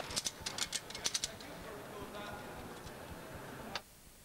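A quick run of sharp clicks and rattles in the first second or so, then low background hiss with a single further click near the end.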